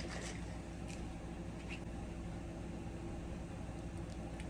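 Quiet steady room hum with a few faint light clicks in the first two seconds as a glass bottle of apple cider vinegar is handled and uncapped.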